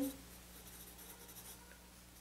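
Graphite pencil writing on sketchbook paper: faint scratching strokes, mostly in the first second and a half.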